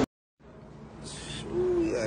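The audio cuts out completely for a moment at an edit, then fades back in as quiet room noise with a brief hiss about a second in. Near the end a person gives one short, low hoot-like 'ooh'.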